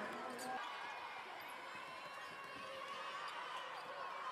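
Basketball bouncing on a hardwood court during play, with crowd voices in the background.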